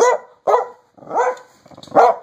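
A dog hidden inside a jacket barking: four short barks about half a second apart, each rising and falling in pitch.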